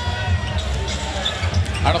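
Basketball dribbled on a hardwood court: a steady series of low bounces.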